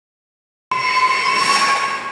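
A sustained, high-pitched metallic squeal of several steady tones over a hiss, cutting in abruptly after a short silence.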